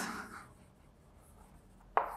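Chalk writing on a chalkboard, faint, as a word is chalked up.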